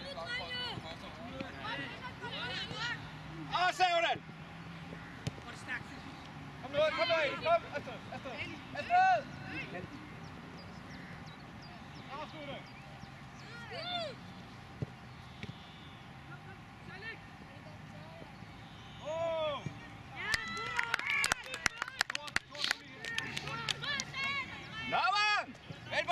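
Young footballers' distant shouts and calls across the pitch, short high-pitched cries every few seconds. Near the end comes a quick run of sharp clicks.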